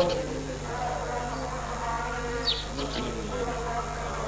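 Faint children's voices murmuring a recitation under a steady low hum, with a few short high chirps, one about two and a half seconds in.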